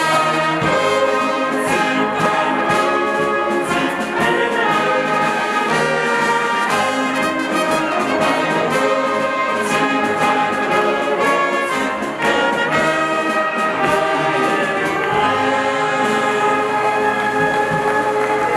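Bavarian brass band (Blasmusik) playing, with tubas, trumpets and trombones, in a steady, continuous stretch of sustained chords.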